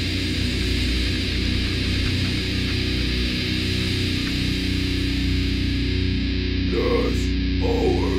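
Heavy metal band playing: distorted electric guitars, bass guitar and a drum kit. The cymbals stop about six seconds in, leaving a few distorted guitar notes.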